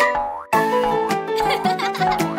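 Bright children's cartoon music with a springy boing sound effect. The music drops away briefly about half a second in, then comes back all at once.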